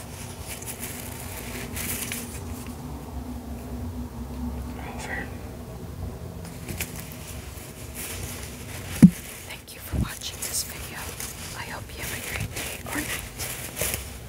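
Soft close-up whispering mixed with the rubbing and rustling of a plush Beanie Baby being turned over in the hands. One sharp tap about nine seconds in is the loudest sound.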